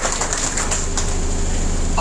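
Scattered hand clapping from an audience, sharp claps that thin out after about a second, over a steady low hum.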